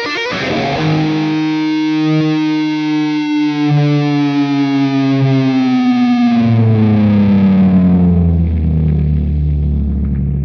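Distorted Music Man electric guitar holding one long note that slides slowly down in pitch over a steady lower note. Deeper low notes come in about two-thirds of the way through and ring on as the note settles.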